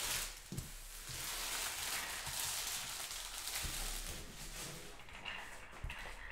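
Faint rustling of trading-card pack wrappers and cards being handled on a tabletop, with a few soft taps as packs are gathered.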